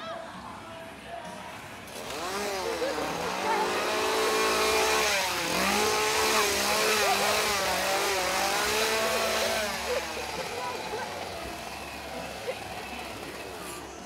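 A chainsaw's small engine revving up and down, starting about two seconds in, loudest through the middle and dropping back near the ten-second mark.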